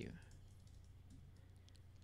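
Near silence over a steady low hum, with a few faint computer keyboard clicks as text is typed.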